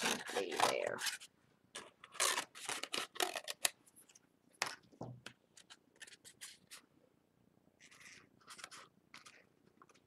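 Scissors cutting through paper or card: short runs of quick snips with pauses between them.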